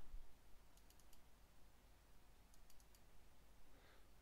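Faint computer mouse clicks over near-silent room tone: a few quick clicks about a second in and another few near the three-second mark.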